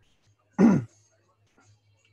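A single short vocal sound from a man, falling in pitch, a little over half a second in, between pauses in his talk.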